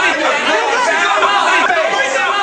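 Several people talking over one another in raised voices.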